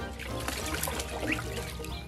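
A duck splashing water as it bathes in a shallow plastic paddling pool, under background music.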